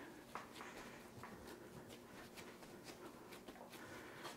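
Near silence: room tone, with a few faint soft ticks from hands pressing bread dough flat on a wooden board.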